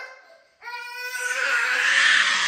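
A toddler crying: a pitched wail starts just over half a second in and turns into a louder, harsh cry.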